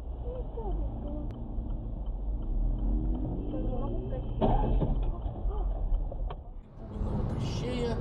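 Dashcam audio inside a moving car: steady low engine and road rumble with indistinct voices over it. A single sharp knock sounds about four and a half seconds in, and the sound changes abruptly near the end as another recording begins.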